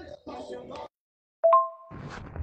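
A smartphone's short two-note chime, a lower note stepping up to a higher one, about one and a half seconds in after a moment of dead silence. Before it, the faint tail of a woman's voice message plays through the phone.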